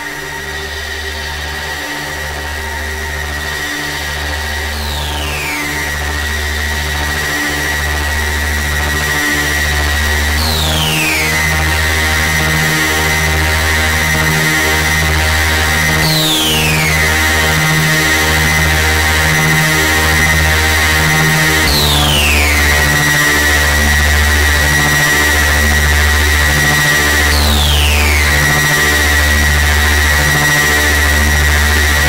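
Noisy electronic music: a throbbing synthesizer bass pulse under a steady high tone, with a falling synth sweep about every five and a half seconds. It grows louder over the first ten seconds, then holds.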